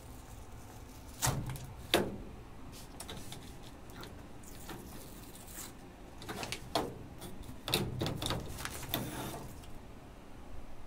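Hands working blue painter's tape, a paper template and a thin light fixture on a sheet-metal blast cabinet lid. Two sharp knocks come about one and two seconds in, and a cluster of smaller taps and paper rustles follows in the second half.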